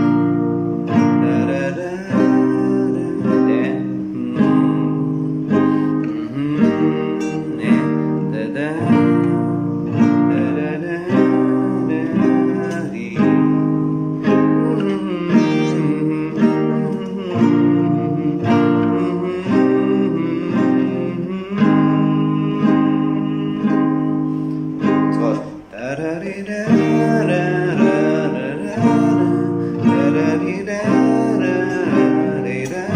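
Classical guitar with a capo, played by hand through a C–G–Am–F chord progression in a steady, even rhythm.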